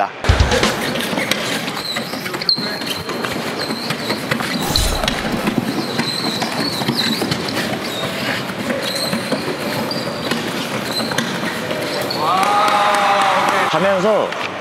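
Rugby wheelchair rolling fast over a wooden gym floor through a cone slalom, with repeated high squeaks on the turns and a steady stream of small rattles and knocks.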